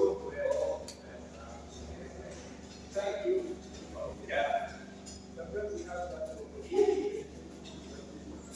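Indistinct voices talking in short phrases, with no clear words, over a low steady hum.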